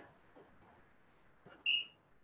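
A single short, high whistle-like note near the end, after a second and a half of quiet background.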